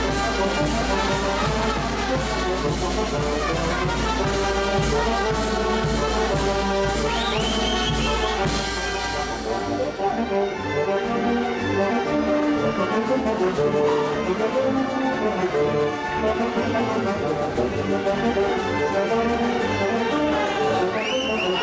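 Live Oaxacan brass band (banda de música) playing dance music, with the brass in front and a steady percussion beat that drops out about halfway through.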